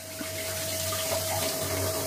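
Kitchen tap running, its stream splashing over tomatoes being rinsed in a plastic colander in a steel sink. The flow swells in at the very start, then runs steadily, with a faint steady tone under it.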